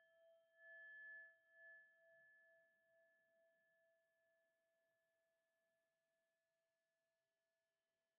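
Faint ringing of a struck singing bowl, a few steady tones pulsing slightly as they slowly fade away, with a brief swell about a second in. It marks the start of silent sitting meditation.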